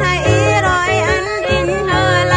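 A voice singing a Central Highlands folk song in a wavering, gliding melody over a band accompaniment, with a bass line pulsing about twice a second.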